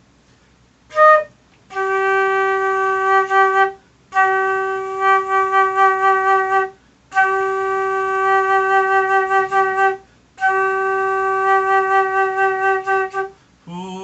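Silver concert flute playing four long held notes on the same pitch, with a short note about a second in. Each long note starts plain and then pulses with diaphragm (breath) vibrato towards its end.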